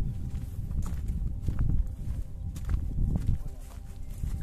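Wind rumbling and buffeting on the microphone, with irregular footsteps on a dirt and grass footpath.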